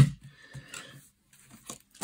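A small LEGO fire truck model handled on a table: one sharp plastic click right at the start, then a few faint clicks and rubs.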